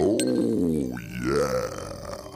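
Electronic music: a very deep, drawn-out, voice-like sound that starts suddenly, falls in pitch, then rises again and holds.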